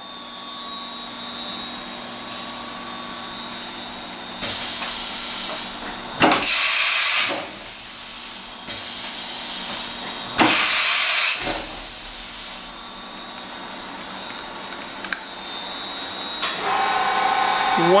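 Doosan MV6030 vertical machining center running with a steady hum and a thin high whine. It is broken twice by a loud hiss of compressed air, each about a second long, around six and ten seconds in, as the machine carries out an M06 tool change.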